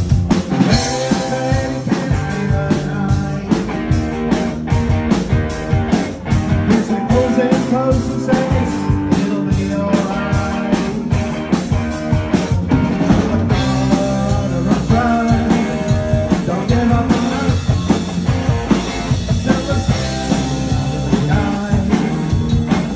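Rock band playing live: drum kit, bass guitar and electric guitar together, with a steady drum beat throughout.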